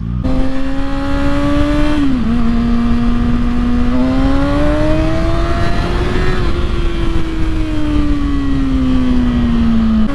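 Kawasaki ZX-6R 636's inline-four engine running under way, with a steady low wind rush over it. The engine note dips briefly about two seconds in, climbs for a couple of seconds from about four seconds in, then slowly falls away.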